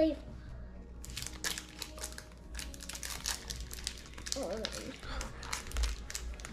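Pokémon trading cards and their packaging being handled at the table: a run of quick, irregular crinkling and rustling, with a short vocal sound about four and a half seconds in.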